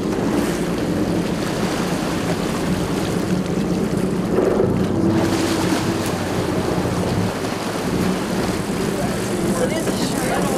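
Sportfishing boat's engines running steadily at trolling speed, a low hum, with wind on the microphone and the rush of water along the hull.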